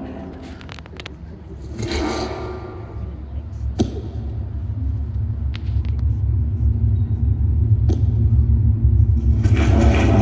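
Deep, low rumbling drone from the installation's sound design, played over loudspeakers, swelling steadily louder from about three seconds in as the projected eyes appear.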